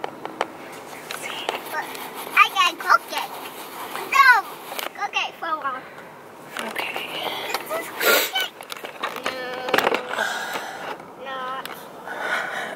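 Young children's voices in short, high bursts that slide up and down in pitch, with rubbing and handling noise on the camera's microphone as the lens is wiped.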